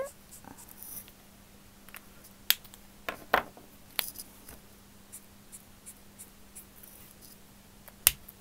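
Copic Ciao alcohol markers being handled: a few sharp plastic clicks, the caps snapping on and off and the markers set down on the desk, between about two and four seconds in and again at the end. A faint steady hum runs underneath.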